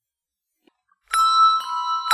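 Handbells played by a handbell choir: after a second of near silence a chord of bells is struck, another strike follows about half a second later, and the notes ring on.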